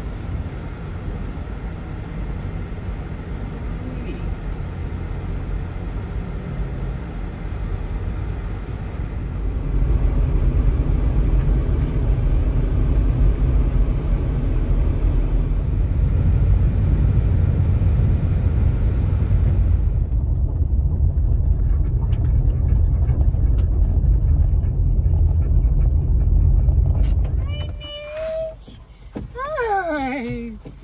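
Car driving, its steady road and engine rumble heard from inside the cabin. The rumble grows louder about ten seconds in and cuts off abruptly near the end, followed by a high, sliding voice.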